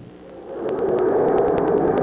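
Steady rushing noise of sprint cars running on a dirt track, fading in about half a second in, with a faint, regular clicking over it.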